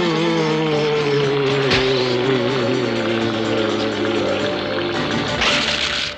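Background music from the soundtrack: a held chord that sinks slowly in pitch, with a short noisy burst near the end.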